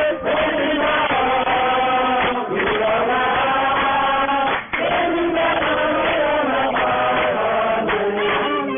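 A church congregation singing a chant-like song together, voices holding long notes, with short breaks about two and a half and just under five seconds in.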